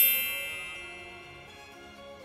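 A bright, bell-like chime sound effect, struck at the start and ringing out, fading away over about two seconds.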